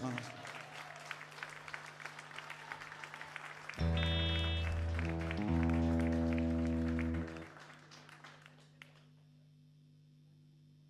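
Applause for about four seconds. Then a loud, steady held instrument chord sounds for about three and a half seconds, with a short break halfway, and dies away.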